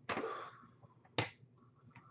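Hard plastic graded-card slabs handled on a desk: a short scraping rustle at the start, then one sharp plastic click a little past a second in.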